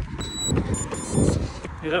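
Garmin running watch beeping: one short tone, then a quick run of short beeps, signalling the end of the 20-minute warm-up step and the start of the next interval. Low rumbling noise on the microphone, loudest about half a second and a second and a quarter in.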